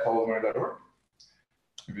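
A man speaking for the first second, then a pause broken by a faint short tick and a sharp click just before he speaks again.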